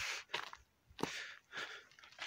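A few footsteps crunching on a dry, gravelly dirt trail, each step a short scuff with quiet gaps between.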